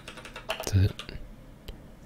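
Typing on a computer keyboard: a handful of separate key clicks, with a brief sound from a man's voice a little past half a second in.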